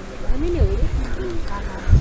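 Faint, indistinct human voices in the background, a few short rising and falling murmurs, over a low rumble.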